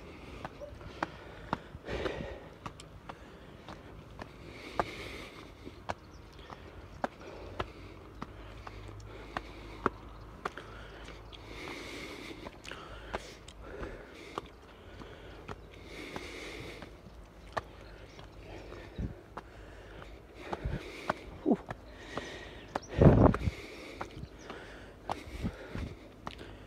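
A man breathing hard while climbing steep stone steps, with irregular footsteps scuffing and tapping on the stone. A louder low puff of breath comes near the end.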